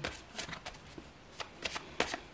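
A tarot deck being shuffled overhand, packets of cards lifted and dropped onto the deck with a scatter of soft, short clicks.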